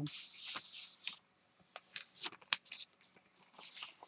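A thin sheet of paper rustles as it is laid and smoothed by hand onto a gel printing plate, with scattered small crackles and ticks and one sharper tick midway. A second rustle comes near the end as the printed sheet is peeled back off the plate.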